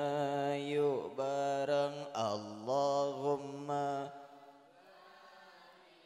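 A man chanting in Arabic with long, melodic held notes that waver in pitch, breaking off about four seconds in. Only faint room sound follows.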